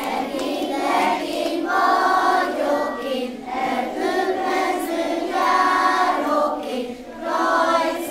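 A group of young kindergarten children singing a folk song together.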